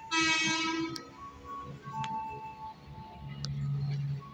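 A commuter electric train sounding its horn, one blast of about a second at the start, while a station chime melody plays. A low hum from the approaching train builds near the end.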